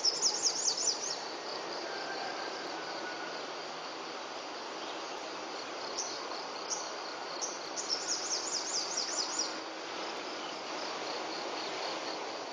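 Outdoor dawn ambience: a steady hum of insects, with two runs of quick, high chirps, one at the start and one about eight seconds in.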